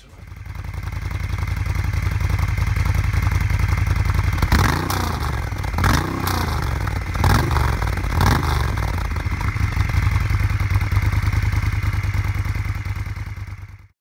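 Moto Guzzi Griso's transverse V-twin idling with a steady lumpy beat, revved briefly four times in the middle, each rev rising and falling back to idle.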